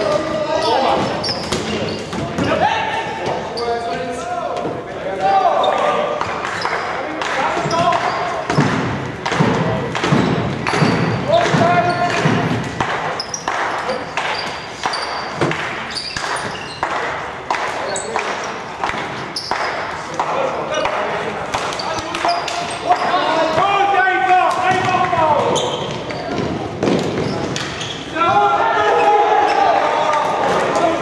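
Indoor floorball game: players calling and shouting over repeated sharp clacks of plastic sticks and ball hitting sticks, floor and boards, with the echo of a large sports hall. The shouting is heaviest a few seconds in and again in the last third.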